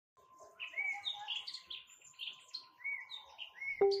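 Small birds chirping and twittering in quick, short, repeated calls with little upward-curving whistles. Just before the end, a loud pitched musical note comes in as music begins.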